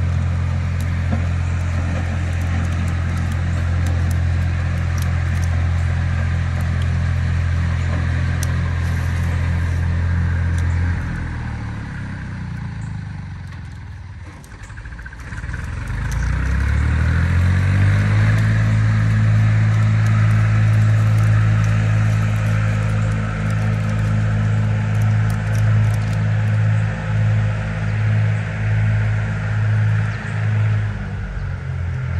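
A steady low mechanical hum, like a motor or engine running, fades away about 11 seconds in. About 16 seconds in it climbs back up and settles into a slightly higher steady hum. Faint rustling and small clicks of trimmer line being handled sit over it.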